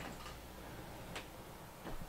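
Faint clicks and handling noise from a person standing up out of an office chair and moving about: three brief clicks, one near the start, one a little past the middle and one near the end, over a faint hum.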